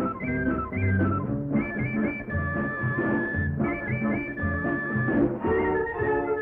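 Instrumental interlude of a 1960s Tamil film song: a melody of short stepping notes, with one high note held for about a second in the middle, over a steady bass beat.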